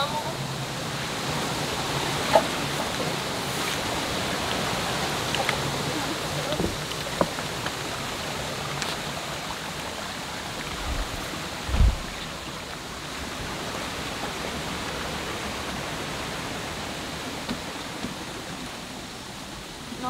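Steady rushing of a river flowing, with a few light clicks scattered through it and one low thump about twelve seconds in.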